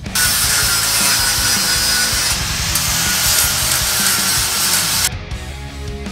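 Power tool cutting metal: a loud, steady, hissing cutting noise that starts abruptly and cuts off about five seconds in, with background music beneath it.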